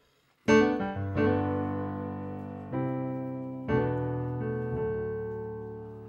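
Electronic keyboard on a piano sound: a loud chord struck about half a second in, then a slow run of further chords, the last left ringing and fading away.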